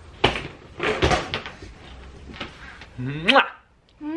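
A few short knocks and bumps from a hard-shell wheeled suitcase being handled. About three seconds in comes a brief voice exclamation that rises in pitch, then the sound cuts off abruptly.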